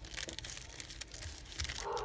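Clear plastic craft packets crinkling in the hands as they are handled and laid down on a table, with a run of irregular small crackles.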